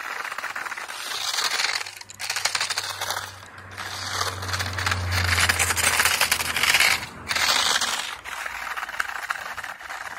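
Small RC car with screw-studded tires and a hot-glued plastic plow driving over packed snow and ice chunks: a dense rattling crackle of clicks and scraping that comes in surges, with short lulls between pushes.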